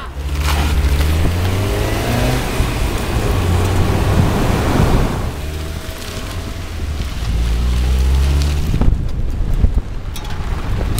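Ford Fiesta driving along a road, its engine running with a steady low note under tyre and wind rush.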